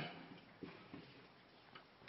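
Near silence: faint room tone with a couple of faint ticks.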